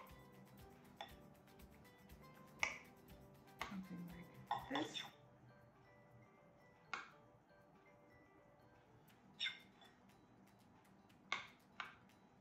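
Metal spoon clinking and scraping against a clear plastic spam musubi press as cooked rice is spooned in and packed down: about half a dozen sharp, separate clicks, spread out and faint.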